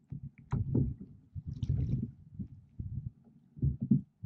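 Oar strokes on a Feathercraft Baylee 3 HD inflatable rowboat: the blades pull through the water and water splashes and gurgles along the hull in repeated bursts, with a few light clicks from the oars.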